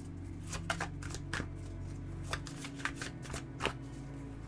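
A deck of tarot cards being hand-shuffled: irregular soft clicks and slaps of the cards, a few each second, as they are cut and pushed through one another.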